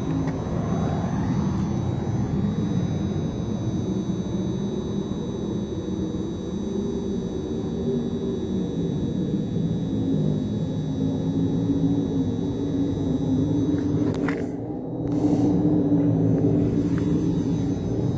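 Steady low rumble with a wavering hum, dipping briefly with a click or two about fourteen seconds in, then a little louder.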